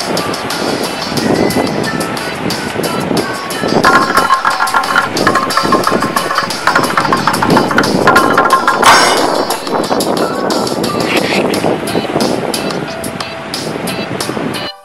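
Background music over a loud, gusting rush of wind and surf on an open rocky shore.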